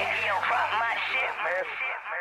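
Hip-hop track playing: a repeating, voice-like pitched melody over a steady bass line. Near the end the sound thins and fades.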